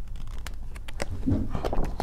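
Page of a hardcover picture book being turned by hand: a series of short paper rustles and taps that grow busier toward the end.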